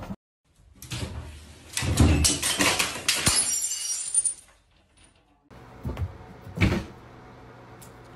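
A clatter of small hard objects knocking and falling on a hard floor, with a run of sharp clicks and crashes, then two separate thumps near the end.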